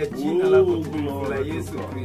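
A man's voice praying aloud, with a long drawn-out word that rises and falls in pitch about half a second in.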